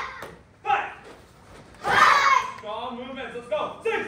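Voices in a children's taekwondo drill shouting in short, loud bursts about a second apart, the calls that go with each move, followed by softer, broken talk in the last second and a half.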